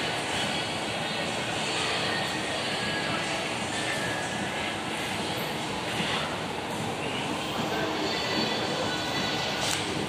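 Hitachi escalator running steadily while being ridden, the moving steps giving a continuous mechanical rolling drone with no distinct knocks or squeals.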